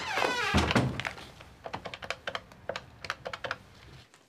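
A short squeak and a heavy thud in the first second, then a run of quick, light clicks lasting about two seconds.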